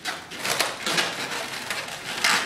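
Twisted latex balloons rubbing against each other and against the hands as the balloon sculpture is squeezed and massaged to tighten its twist connections. The rubbing comes as a series of irregular short scrunches.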